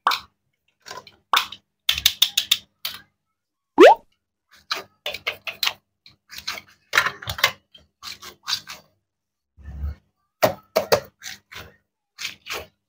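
Plastic toy fruit pieces being handled, knocked together and pulled apart by hand: a run of irregular clicks, taps and short rasps, with one brief rising squeak about four seconds in.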